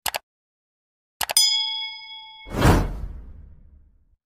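Subscribe-button sound effect: two quick mouse clicks, then about a second later two more clicks and a bright bell ding that rings for about a second, followed by a whoosh that fades away.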